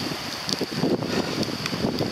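Wind gusting over the microphone with heavy rain falling, and a few light taps.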